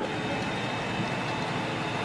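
Upright vacuum cleaner running steadily, a constant whir with a faint high whine.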